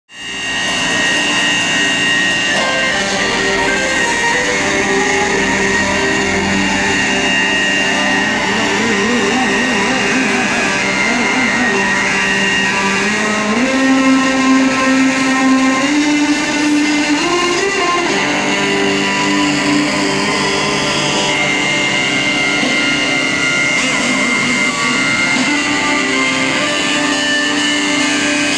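Guitar-led music fading in at the start, with long held notes that step up in pitch about halfway through.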